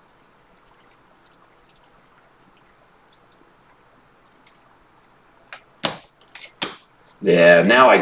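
Trading cards being flipped through by hand: faint soft flicks of card stock over a low room hiss, then a few sharp clicks about six seconds in.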